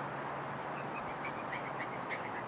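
Steady outdoor background on a golf tee with spectators, carrying a faint run of short, high chirps at about five a second from about a second in.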